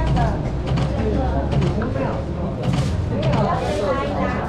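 Several people talking over one another in a room, with short rustling and handling noises over a steady low hum.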